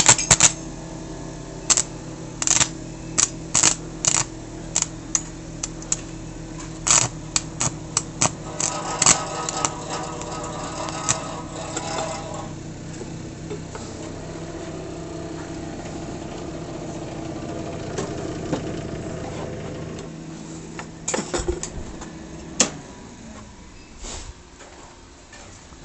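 Electric arc welding: the welder's steady low hum under sharp, irregular crackles and pops from the arc, thickest in the first half. The hum stops about four seconds before the end, followed by a few last clicks.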